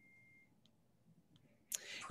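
Near silence on a video call, with a faint thin high tone in the first half-second and two faint ticks.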